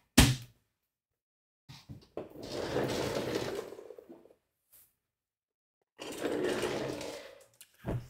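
A single sharp knock just after the start, then two spells of rustling, each about two seconds long, as a folded quilt top is picked up and handled.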